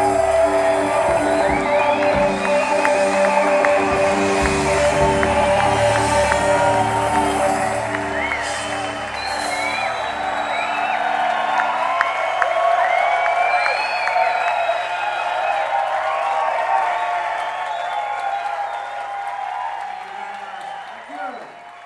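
A live rock band's final held chord rings out under audience cheering and applause. The band stops a little over halfway through, and the crowd goes on cheering.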